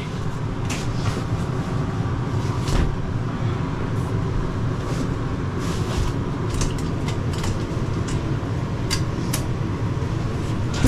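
Trifold sofa being pulled out and unfolded into a bed: a series of short knocks and rustles from the frame and cushions being handled, over a steady low hum.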